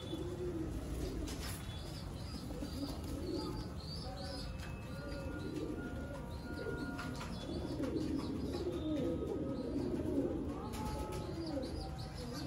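Several domestic fancy pigeons cooing over and over, with higher chirping mixed in.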